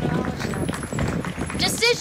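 Low outdoor background rumble with faint voices, then a woman's speaking voice comes in about a second and a half in.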